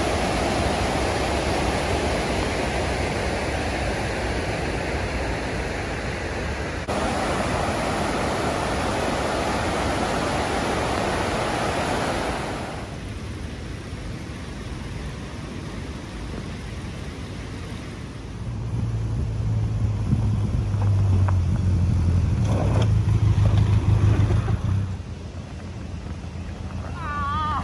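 A fast mountain river rushing over rocks for about the first twelve seconds, then a quieter stretch. From about two-thirds of the way in, a low steady engine hum: a Benelli TRK 502X motorcycle's parallel-twin engine running as the bike rides along a gravel track, cutting off just before the end.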